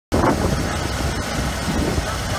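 1988 Ford F-150 engine idling steadily, heard close under the open hood, running smoothly through shorty headers into a single muffler.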